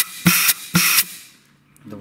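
Compressed air blown in short pulses into a clutch-pack feed port of a 09G automatic transmission: quick hisses of air, each with a low clap as the clutch piston applies, about two a second, stopping a little after a second in. This clap test shows whether a clutch pack holds air or leaks past its piston or seals.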